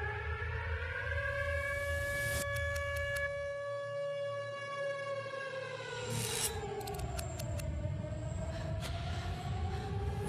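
A wailing air-raid siren whose pitch rises slowly, falls away and starts rising again, over a low rumble. Short runs of sharp clicks come in about two and a half seconds in and again around six to seven seconds.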